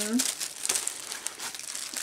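Plastic-wrapped rolls of decorative mesh crinkling as they are handled, a dense run of irregular crackles and rustles.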